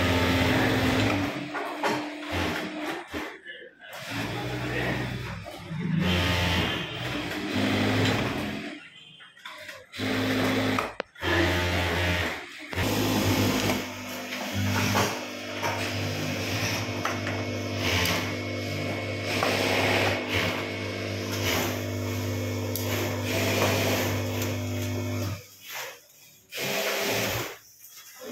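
Background music playing over a Singer industrial single-needle lockstitch sewing machine stitching fabric.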